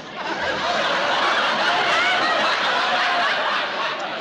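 Audience laughter: a loud, crowd-wide swell of laughing that builds just after the start and eases off near the end.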